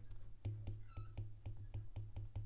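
Faint clicks and taps of a stylus on a tablet's glass screen during handwriting, several light ticks a second. A short, faint high-pitched squeak sounds about a second in.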